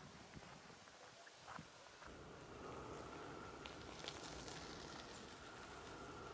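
Footsteps on a gravel path, faint and about two a second, from someone walking. About two seconds in they give way to quiet outdoor background with a faint steady high whine and a few small clicks.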